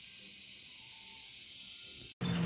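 A faint, steady high hiss with nothing else happening in it.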